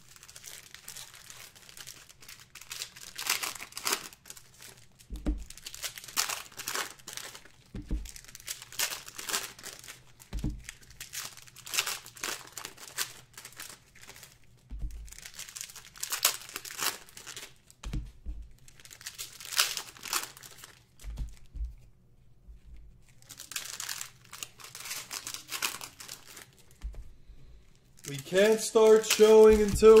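Plastic trading-card pack wrappers being torn open and crinkled, in repeated bursts a couple of seconds apart, with soft knocks of packs and cards set down on a table between them. A man's voice starts near the end.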